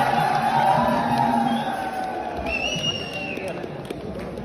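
Crowd chatter in a large echoing hall, with music fading out in the first second or so, and a short high whistle-like tone about two and a half seconds in.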